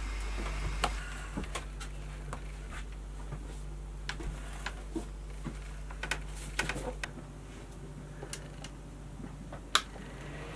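Scattered small clicks and taps of hands working on boat electrical wiring and connectors, over a low steady hum, with one sharper click near the end.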